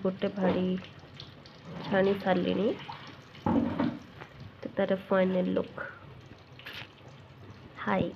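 A woman's voice speaking in short phrases with pauses between them, over faint steady background noise.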